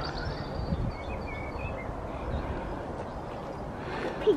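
Outdoor canal-side ambience: a steady low wind rumble on the microphone, with a few faint bird chirps about a second in.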